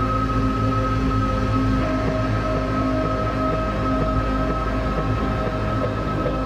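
Dark ambient drone music built from processed, detuned electric guitar samples: a low rumbling bed under steady held tones, with a new middle tone coming in about two seconds in.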